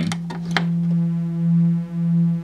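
Corsynth VC LFO used as an audio oscillator: a steady low sine tone sounds throughout. In the first half second a patch cable clicks as it is plugged in, and then a quiet, buzzy saw wave at the same pitch joins the sine, turned down through an attenuator.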